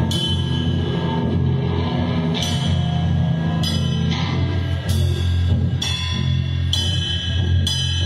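Live rock band playing an instrumental passage: a deep, steady bass under drums, with cymbal crashes coming about once a second.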